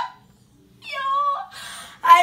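A single short, high-pitched cry lasting about half a second, a second into a brief hush between bursts of laughter.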